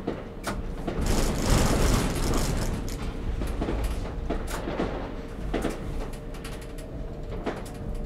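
Tram running slowly along the track, heard from the driver's cab: a steady low rumble of wheels and running gear that swells about a second in, with a few short knocks of the wheels over track work.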